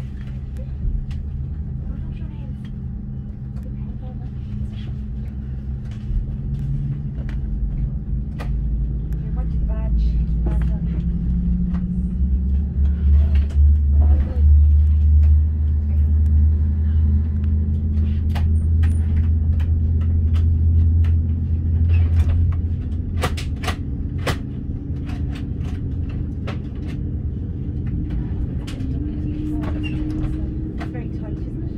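Cabin noise of an Airbus A330-300 taxiing, heard from a window seat over the wing: a steady low engine hum and rumble. The rumble swells much louder for several seconds in the middle, and an engine tone rises slightly in pitch before that. Light clicks and knocks come and go throughout.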